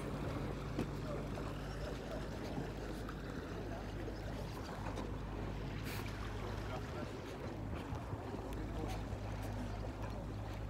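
A motorboat engine running at a steady low drone, with the washy noise of water and open air around it.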